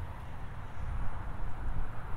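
Low, uneven outdoor rumble with a faint hiss above it and no clear tone or distinct event.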